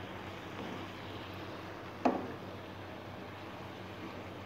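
Chicken pieces simmering in tomato sauce in a frying pan, a steady hiss, while a wooden spoon stirs them; one sharp knock of the spoon against the pan about two seconds in.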